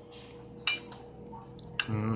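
Cutlery clinking against a dish, two short sharp clinks, about 0.7 s in and near the end, over a faint steady hum.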